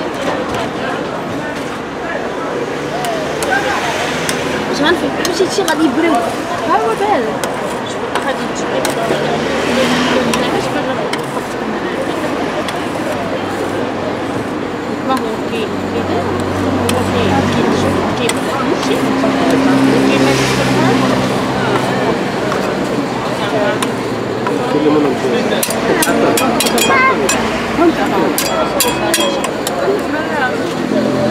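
Metal spatulas scraping and tapping on the steel cold plate of a rolled ice cream machine as the frozen ice cream layer is scored, with a quick run of sharp taps near the end. Several people talk over it.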